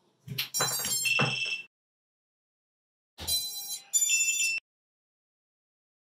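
Startup tones from a Holybro Kopis 2 HDV quadcopter as its XT60 battery lead is plugged in: the electronic speed controllers beep through the brushless motors. There are two short series of high beeping notes, the first about half a second in and the second about three seconds in.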